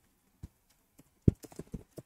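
A few scattered keystrokes on a computer keyboard, sharp separate clicks, the loudest about a second and a quarter in, followed by a quick run of lighter ones.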